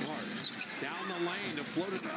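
Basketball game TV broadcast audio at low level: a commentator's voice over steady arena crowd noise.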